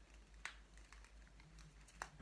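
Faint small clicks and rustles of fingers working a small elastic band around a lock of hair, with one clearer click about half a second in, over a low steady hum.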